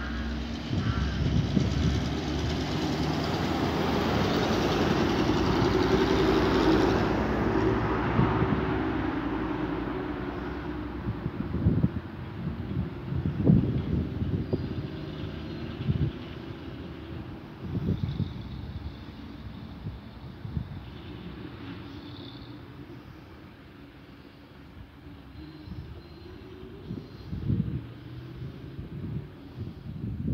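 A passing vehicle: a rumble that swells over several seconds and fades away. It is followed by scattered short thumps.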